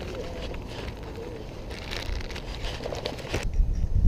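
Outdoor ambience with a low wind rumble on the microphone, faint indistinct voices early on, and brief rustling and clicking handling sounds in the second half.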